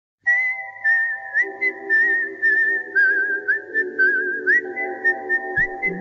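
A whistled melody with quick upward slides into its notes and little warbles, over held chords that change twice, as in a music track.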